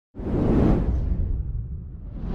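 A whoosh sound effect with a deep low end, swelling in suddenly just after the start and fading away over the next second and a half.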